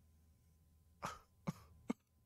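A man's three short, sharp breathy bursts, about half a second apart, starting a second in after a moment of near silence: a laugh breaking out through the nose and throat, close to a cough.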